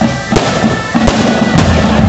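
Dhol drumming with loud, hard strokes at an uneven spacing, over a band's held high melody line.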